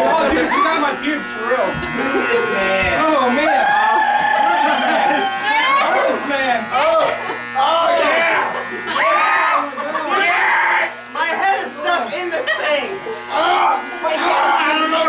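Loud party voices shouting and wailing over a steady electronic buzz and hum from circuit-bent noise gear.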